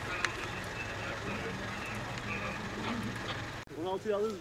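Faint, distant voices of several people over a steady low outdoor rumble, with one sharp click just after the start. The sound cuts off suddenly near the end.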